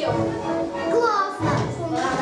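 Children's voices calling out and chattering, with music.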